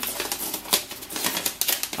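An adhesive paper label being peeled off the plastic casing of a UPS, giving a dense run of irregular crackling and tearing clicks.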